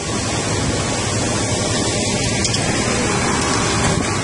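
Concrete pump truck running while pumping concrete into the foundation forms: a steady rushing noise with a low engine hum underneath.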